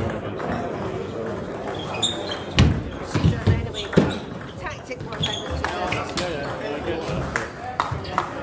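Table tennis rally: the ball clicks sharply off bats and table in a quick run of knocks from about two and a half to four seconds in, with low thuds under them. Voices murmur in the hall throughout.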